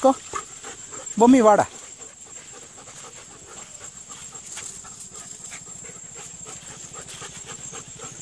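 A dog panting steadily and quietly.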